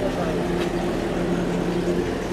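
Toyota Coaster minibus engine idling with a steady, even hum, voices faint in the background.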